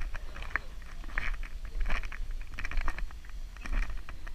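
Footsteps on concrete stairs, a short scuff or tap about every half second to second, over a steady low rumble of wind on the microphone.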